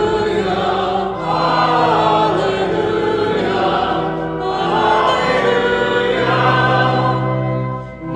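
Congregation singing the gospel acclamation in phrases over organ accompaniment that holds long low notes.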